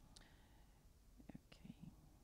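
Near silence: room tone through the microphone, with a few faint, brief voice sounds in the second half.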